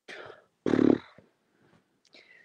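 A person's voice: a soft breath, then a brief low-pitched vocal sound just over half a second in, followed by a pause.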